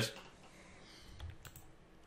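A few faint clicks of a computer mouse and keyboard, about a second in, over quiet room tone.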